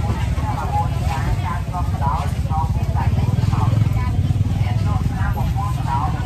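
People talking at a market over a steady low rumble of a small engine running.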